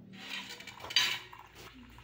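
Crockery clattering, with one sharp clink about a second in, then a few faint ticks.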